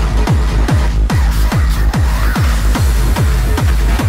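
Hard trance music from a DJ mix: a kick drum on every beat, each hit a falling boom, about two and a half beats a second, under dense synths and hi-hats, with a brief swirling synth sweep about halfway through.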